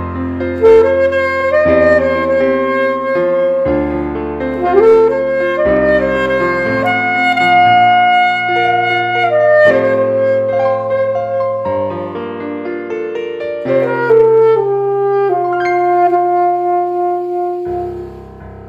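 Alto saxophone playing a slow worship-song melody in long held notes over a piano and bass backing track. The saxophone stops just before the end, leaving the piano.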